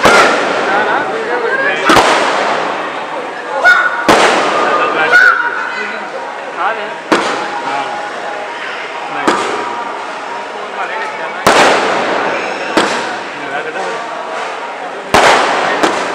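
Aerial fireworks going off: sharp bangs of shells bursting about every one to two seconds, eight or so in all, each trailing off.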